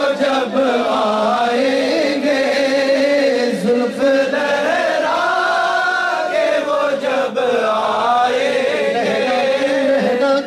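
A male voice singing a naat, an Urdu devotional poem, in long drawn-out melodic phrases whose held notes slowly rise and fall.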